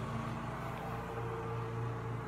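A steady low mechanical hum, with a faint constant higher tone over it.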